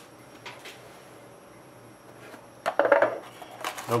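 A cardboard trading-card hobby box being handled and opened on a tabletop. A couple of faint taps come first, then louder cardboard scraping and knocking from just under three seconds in, as the lid comes off.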